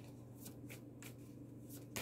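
Tarot cards being handled and shuffled: a few faint, soft card rustles and flicks, over a steady low hum.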